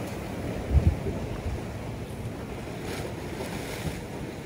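Steady wash of sea waves with wind buffeting the microphone, and one low thump about a second in.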